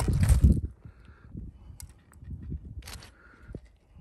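Wind buffeting the microphone, strongest in the first half-second, then lighter low rumble with a few short clicks and knocks as a steel axe head is handled and turned over on gravel.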